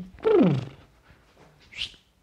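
A man's voice making a wordless vocal sound effect that slides down in pitch for about half a second, followed by a short hissing sound near the end.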